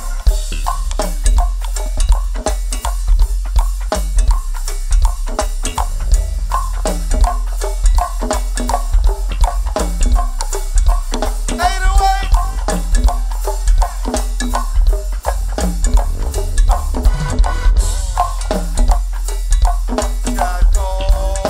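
Go-go band playing a groove: drum kit and percussion hitting steadily over a heavy bass, with a wavering high note rising above the band about twelve seconds in.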